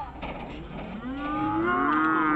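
A person's long drawn-out call, starting about a second in and rising in pitch as it is held, over faint court noise.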